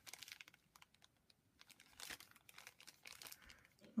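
Faint crinkling of a small clear plastic bag handled in the hands, in scattered crackles with a short lull about a second in.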